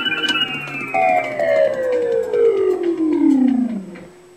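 Music played back from a reel-to-reel tape recorder, every note sliding steadily down in pitch for about three and a half seconds as the tape slows, then dropping away near the end.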